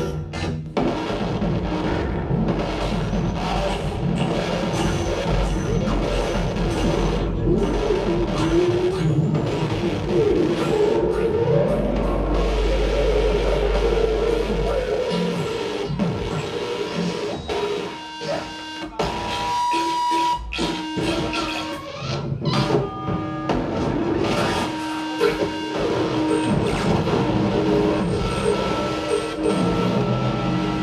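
Live music played at full volume: a dense, shifting, noisy texture over a deep low drone that swells through the middle, with short steady tones cutting in during the second half.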